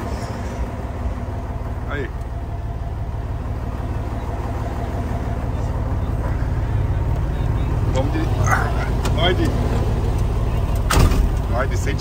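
Scania truck's diesel engine idling steadily, heard from inside the cab. There is a sharp knock about eleven seconds in.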